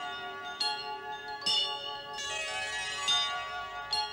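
A short musical jingle of bell-like chimes: about five struck notes, one after another, each left to ring.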